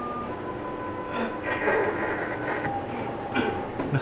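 Automatic pancake machine running, with a steady mechanical hum and a couple of faint steady tones as its rollers turn.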